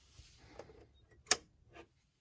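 A consumer-unit breaker switch being flipped by hand, giving one sharp plastic click about a second and a quarter in, followed by a fainter click just before the end.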